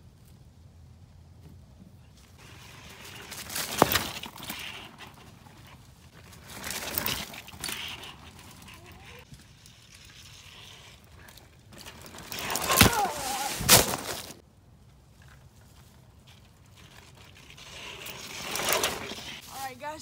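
Mountain bikes riding past on a dirt trail strewn with dry leaves: four passes of tyres rolling over dirt and leaves, each rising and fading over a second or two. There are sharp clanks during the first and third passes.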